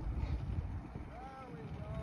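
Muscle car engine rumbling low and steady during a tyre-smoke burnout, faint in the mix.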